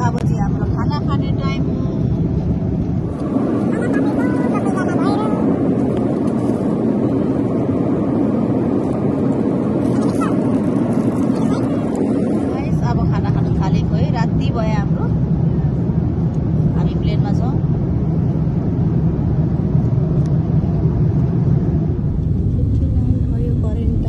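Airliner cabin noise: the steady, loud rush of jet engines and airflow heard from inside the passenger cabin, changing character a couple of times. Voices come through faintly over it.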